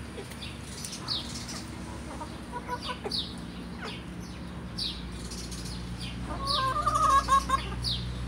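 A backyard flock of chickens clucking as they feed, with short, sharp high chirps coming again and again. About six seconds in, one bird gives a louder, longer call lasting about a second.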